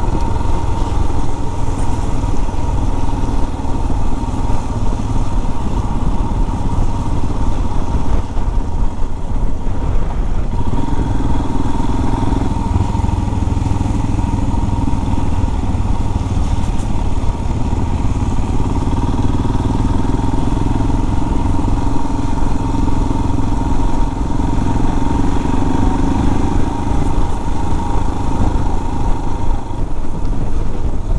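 Motorcycle engine running steadily while riding, its note rising and falling a little with the throttle, over a constant low rumble.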